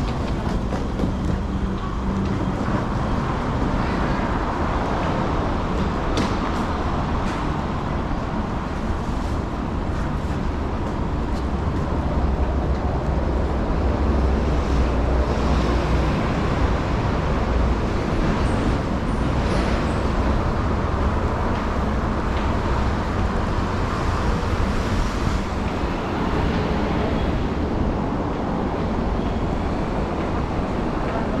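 Steady urban background noise of road traffic and a railway station, dominated by a deep low rumble, with a few faint ticks.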